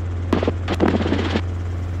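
Robinson R22 helicopter in cruise flight: a steady low drone of its engine and rotor. Some brief irregular noise rises over it in the first half.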